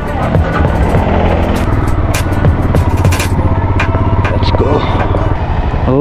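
Royal Enfield single-cylinder motorcycle engine running steadily as the bike rides slowly into traffic, heard from the rider's seat, with a song playing underneath.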